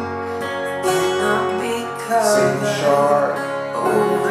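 Steel-string acoustic guitar with a capo, strummed through the song's chords, over a recording of the song with a singing voice.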